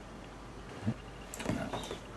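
Soft handling noises close to the microphone: a dull bump a little before halfway, then a short cluster of clicks and scrapes, over a quiet room.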